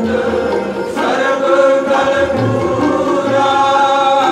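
Sikh kirtan: voices singing a devotional hymn in sustained, chant-like lines, accompanied by bowed dilruba and soft tabla beats.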